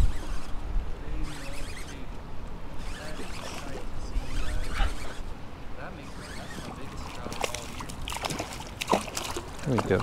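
Water sloshing against a kayak hull in a strong current, with faint voices in the background.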